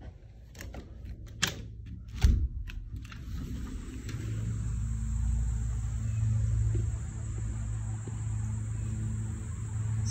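A few sharp clicks and knocks in the first seconds, the loudest about two seconds in with a low thump, then a steady low hum with a low rumble beneath that grows a little louder about four seconds in.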